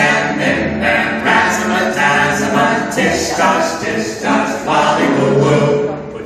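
A group of voices singing a rhythmic children's action chant a cappella, the sung syllables coming in an even beat.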